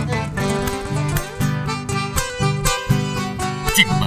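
Live band playing an instrumental chamamé, acoustic guitars and accordion with violin over a steady rhythmic pulse.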